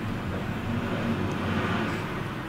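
Steady low hum and hiss of background room noise, level and unbroken, with no distinct event.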